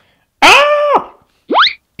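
A short, high-pitched cry of surprise, a startled 'ah!'. It is followed near the end by a quick rising slide-whistle effect, a cartoon zip.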